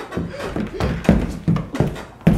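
A run of soft thumps and scuffles, about three a second, from a boy and a boxer dog tussling on the floor and couch cushions.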